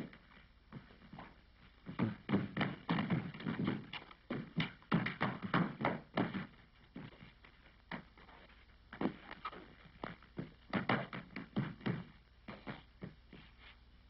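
Shoes scuffling and stamping on the floor with thuds as two people grapple in a slapstick struggle, in three irregular flurries of quick knocks.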